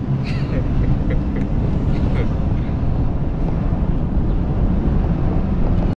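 Tow truck running with a car hooked behind it: a steady low engine and road rumble, with faint snatches of voice in the first couple of seconds.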